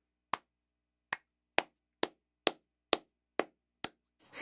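Eight sharp knocks or claps in a steady slow beat, about two a second, with dead silence between them; the last one is softer.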